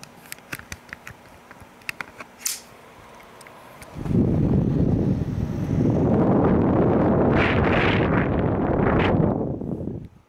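A few light clicks, then about four seconds in a loud rushing as the Seville Classics tower fan's squirrel-cage blower pushes air straight onto the microphone at its grille, stopping suddenly at the end.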